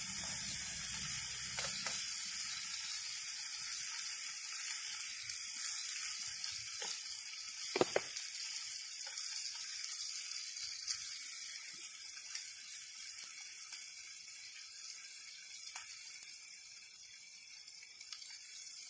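Bacon sizzling in a metal mess tin over a gas canister stove: a steady high hiss that slowly grows quieter, with scattered crackles and one sharper pop about eight seconds in.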